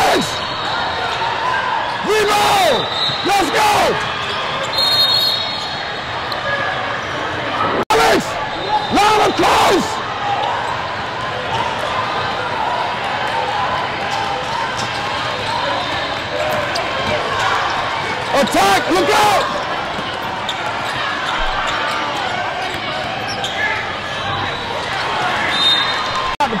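A basketball bouncing on a hardwood court during a game, with sharp bounces at irregular intervals, over the steady chatter of a crowd echoing in a large hall.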